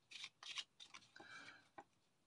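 Faint soft strokes of a packet of playing cards being shuffled by hand, several light slides and flicks of card on card.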